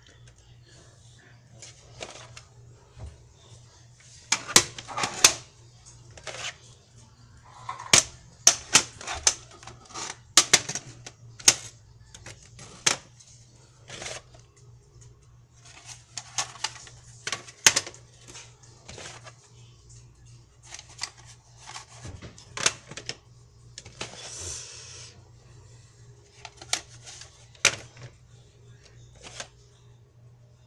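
Plastic VHS cassettes and their cases clacking and knocking as tapes are handled and pulled from a packed shelf, in irregular sharp clicks, with a longer sliding scrape about 24 seconds in. A steady low hum runs underneath.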